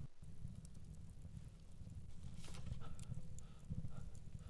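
Low, dark ambient drone with faint scattered crackles; a faint thin tone comes in about two and a half seconds in.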